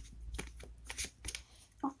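A deck of cards being shuffled by hand: a quick run of short papery snaps and flicks, about five or six in under two seconds.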